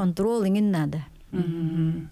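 A woman's voice: speech for about a second, then a short pause and a long hum held on one steady pitch.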